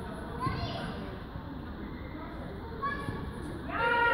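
Children's voices calling out during football play on an open pitch, with short calls early on and a loud, high shout starting near the end.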